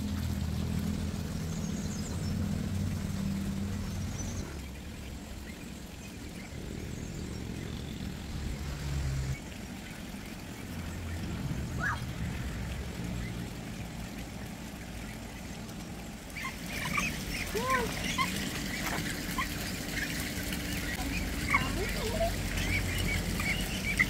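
Muscovy ducks calling in a group, many short peeping calls that start about two-thirds of the way in and run on, over a low steady rumble.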